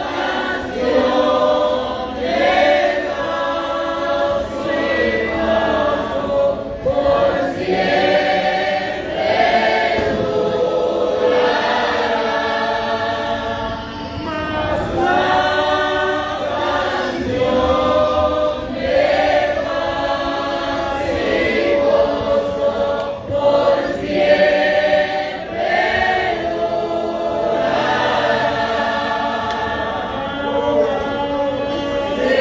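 Several voices singing a hymn together in continuous sung phrases, with a man's voice amplified through a microphone.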